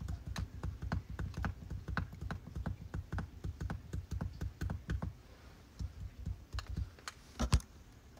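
Rapid light finger taps close to the microphone, like typing on a phone screen, dense for about five seconds and then sparser, with one louder knock near the end.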